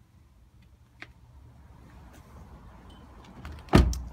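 A click about a second in and rustling movement, then a Mitsubishi ASX car door shut with a single loud thump near the end.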